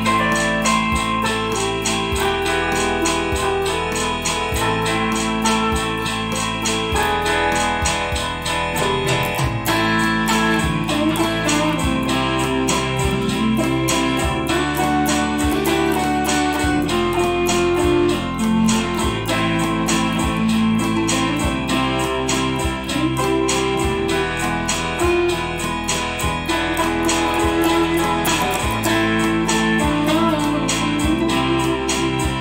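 Godin electric guitar playing a lead melody high on the neck over a backing track of bass, drums and keyboard, with the bass changing chord every second or two in a steady rhythm.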